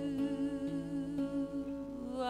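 A singer holding one long note with a slight waver over acoustic guitar chords, the chord underneath changing twice.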